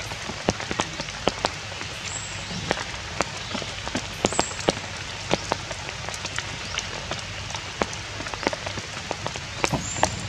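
Steady rain falling on leaves and wet ground, a constant hiss with many sharp individual drop hits standing out above it.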